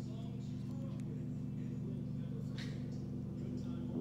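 A steady low hum made of several evenly spaced tones, unchanging throughout.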